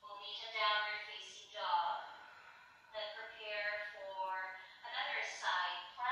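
A woman speaking in drawn-out phrases of about a second each.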